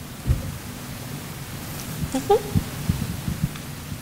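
A handful of dull, low thumps and knocks from handling at the lectern: one just after the start, then a quick run of four about two and a half seconds in. Under them is a steady room hum, and a brief murmured voice comes about two seconds in.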